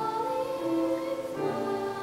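Music with a choir singing long, held notes.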